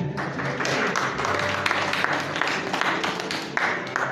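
Congregation applauding, a dense patter of many hands clapping, with instrumental music playing softly underneath.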